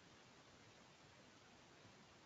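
Near silence: faint steady hiss of an idle microphone line.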